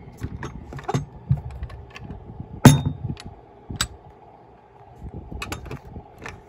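A 1/24-scale diecast model car being handled: small scattered clicks and clacks of its parts, with one louder knock nearly three seconds in.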